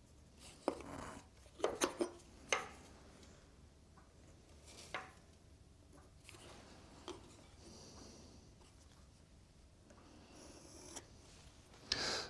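Pencil drawing lines on a wooden block: several short, faint scratching strokes in the first three seconds, then two or three more spaced out.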